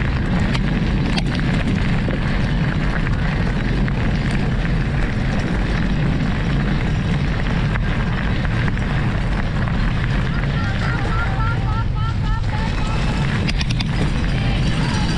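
Wind buffeting an on-board camera microphone and tyre rumble from a mountain bike riding fast over a gravel track, a steady noise throughout. Near the end comes a brief run of short, quick rising calls, and a few sharp knocks.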